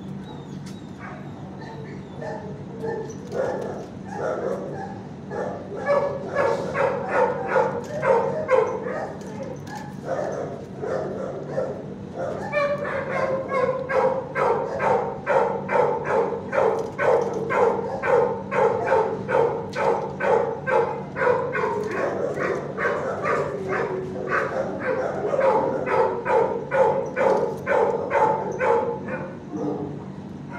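Dogs in an animal shelter's kennels barking repeatedly: scattered barks at first, then a dense, steady run of about three barks a second from a little before halfway on. A steady low hum runs underneath.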